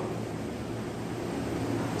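Steady background hiss with a faint low hum and no speech: room noise in a pause in the talk.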